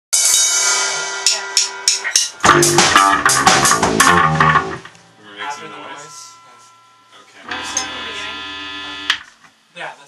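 Rock band rehearsing with electric guitars, bass and drum kit: ringing guitar chords with drum hits, then the full band comes in loudly with heavy bass about two and a half seconds in and stops short near five seconds. Near the end another chord with bass is held for under two seconds and cut off, the band playing the song's opening in fits and starts.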